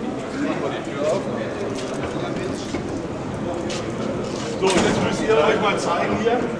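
Indistinct chatter of a crowd of people in a large hall, with a louder, nearer voice for about a second near the end.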